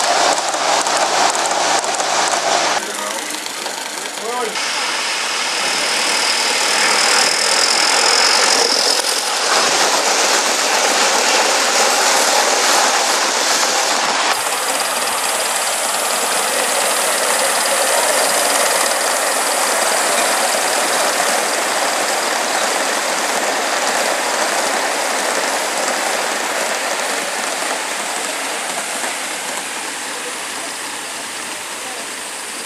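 A small gasoline-engined model locomotive running with a fast, even exhaust beat for the first few seconds. Then a steady hissing running sound of a large-scale model train on the garden track.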